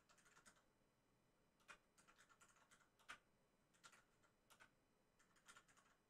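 Faint typing on a computer keyboard: short runs of quick keystrokes with brief pauses between them.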